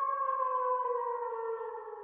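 Channel logo intro sound: a long held tone with several overtones, sliding slowly down in pitch and fading away near the end.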